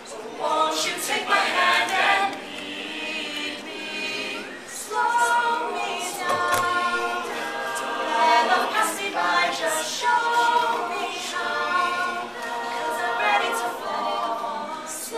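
Mixed-voice a cappella group singing a pop song in harmony, a male soloist leading over the backing voices.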